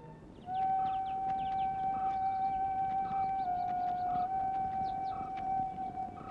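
A single high electronic tone held steady from the film's background score. It dips slightly in pitch for about a second in the middle, over soft pulses about once a second and faint short high chirps.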